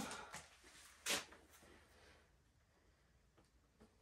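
Near silence in a small room, broken once about a second in by a short, soft handling noise as the PEX tubing is moved.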